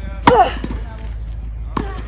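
Tennis ball struck hard with a racket on a grass court: a sharp crack about a quarter second in, with the hitter's grunt falling in pitch straight after. A second, fainter racket hit comes near the end as the ball is returned.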